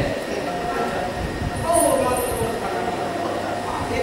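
A man's voice speaking on stage in a large hall, with an uneven low rumble beneath it.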